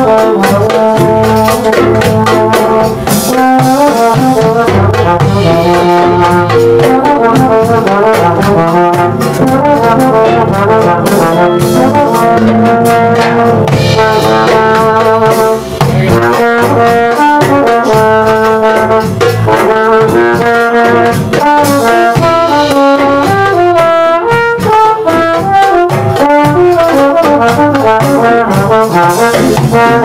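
A live klezmer band plays an instrumental tune: a melody line moving over bass and drums, loud and unbroken.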